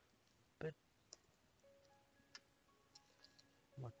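Near silence with a few faint, scattered clicks of a computer keyboard being typed on.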